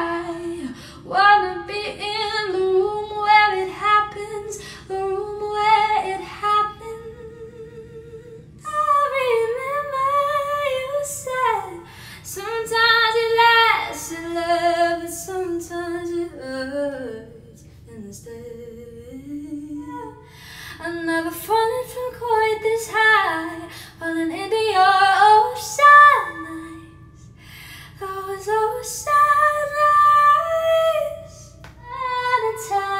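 A woman singing solo: one voice carrying a melody, with a short break about eight seconds in where one song snippet gives way to another.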